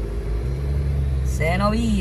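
Car engine and road noise heard from inside the cabin while driving: a steady low rumble. A man's voice comes in about one and a half seconds in.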